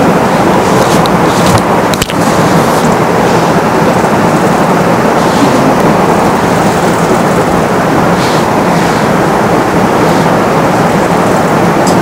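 Loud steady rushing noise with no speech, like a heavily boosted background hiss, with a click about two seconds in and a few faint rustles.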